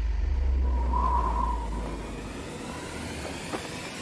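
Deep, steady low rumble with a faint hiss over it, like a big aircraft's drone or air rushing past, fading after about two and a half seconds. A faint high tone sounds briefly about a second in.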